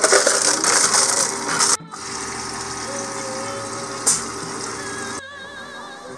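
Self-serve soda fountain dispensing into a paper cup: a loud, steady hiss for nearly two seconds that cuts off suddenly. After that, background music plays with a steady hum under it.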